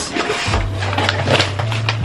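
Cardboard mailer box being opened and handled: a run of rustles, scrapes and light knocks, with background music underneath.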